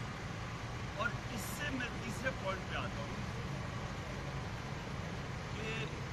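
Faint, indistinct talking in short fragments over a steady low hum.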